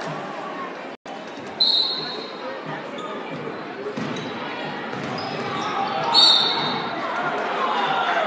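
Basketball game sound in a large gym: a basketball bouncing on the hardwood and crowd chatter, with two short referee whistle blasts, one about a second and a half in and one about six seconds in.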